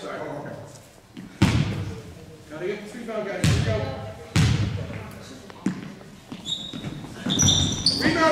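A basketball bouncing on a gym floor, about five irregularly spaced bounces, each ringing in the large hall: the ball coming to the shooter and the dribbles before a free throw. Short high squeaks come near the end as the shot goes up.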